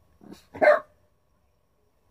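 A dog barking once, sharply, about two-thirds of a second in, with a fainter short sound just before it.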